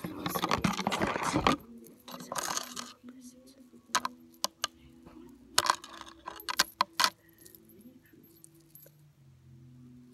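A metal chain necklace jingling as it is lifted out of its box and handled, with handling rustle at first. Then come several separate sharp clinks of the chain links and stones against each other, about halfway through.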